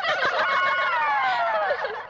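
A group of young women laughing and shrieking together, many voices at once. In the second half their voices slide down in pitch together.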